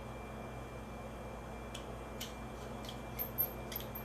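Faint clicks and a few short, high squeaks of a small screwdriver turning a screw into a Baofeng speaker-microphone's plastic housing, mostly in the second half, over a steady low hum.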